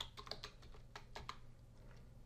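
A computer keyboard being typed on: a quick, uneven run of faint key clicks that thins out a little past halfway.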